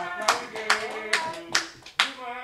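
A group of voices singing together, with hand claps keeping time at about two claps a second.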